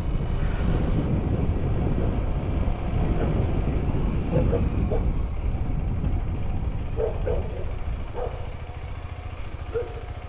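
KTM adventure motorcycle engine running at low speed as the bike rolls along and pulls up, the engine sound easing off over the last couple of seconds.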